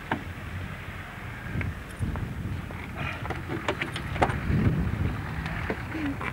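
Wind rumble on the microphone, with a sharp click just as a car door handle is pulled, then scattered light clicks and knocks.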